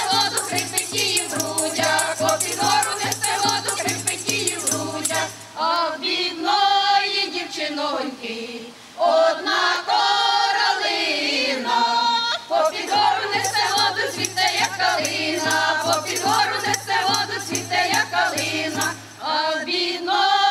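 Women's folk ensemble singing a Ukrainian folk song, the voices sliding between notes. A tambourine keeps a quick, steady beat under the singing for the first five seconds or so, drops out, and comes back from about thirteen to nineteen seconds.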